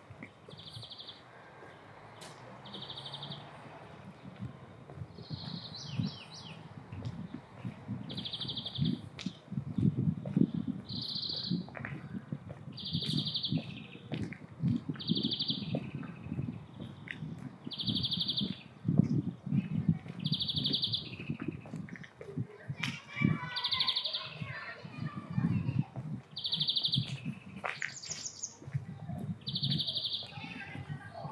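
A bird repeating a short, buzzy trilled note about every one to two seconds, with a few quicker chirps near the end, over a low background of street sound.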